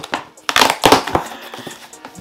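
Shipping packaging being handled and crumpled by hand: a loud, dense crinkling burst about half a second in that lasts under a second, after a brief rustle at the start.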